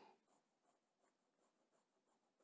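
Very faint scratching of a Kaweco Perkeo fountain pen's fine steel nib writing loops on Rhodia paper, a light stroke about three times a second. It is the nib's slight feedback on the paper, not scratchiness.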